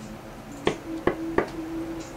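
Three sharp taps or knocks in quick succession, about a third of a second apart, over a faint steady low tone.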